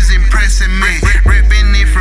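Hip-hop track: a rapper's verse over a beat with deep, heavy bass.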